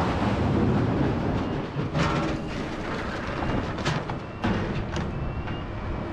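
Rocket motor of a MICLIC mine-clearing line charge just after launch, a loud rushing noise that eases after about two seconds as it pulls the line charge out of its trailer. Two sharp knocks come about two and four seconds in.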